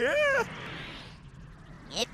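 A high-pitched, distorted cartoon voice gives one short rising-and-falling syllable that sounds like a meow, then a soft hiss runs for about a second and a half.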